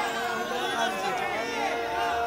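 Audience chatter: several voices talking at once, fainter than the recitation, over a steady faint tone.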